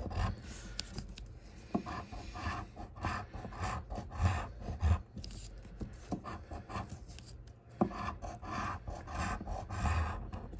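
A metal scratcher coin scraping the coating off a lottery scratch-off ticket in short, irregular repeated strokes.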